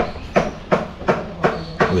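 A regular series of short clicks or knocks, about six in two seconds, evenly spaced.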